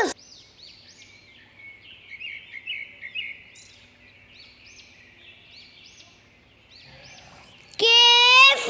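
Faint bird chirps: many short calls that rise and fall in pitch, repeated irregularly through a quiet background.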